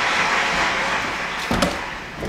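A steady hiss-like noise that slowly fades, with a single wooden knock about one and a half seconds in as a picture frame is set down on a wooden desk.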